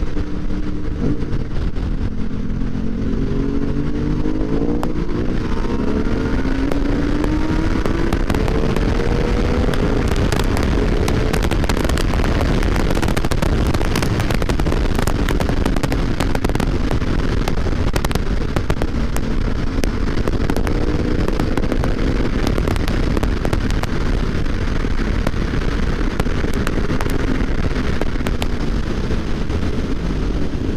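Motorcycle engines running at road speed under a dense rush of wind and road noise, their revs rising and falling several times through gear changes, mostly in the first ten seconds and again around twenty seconds in.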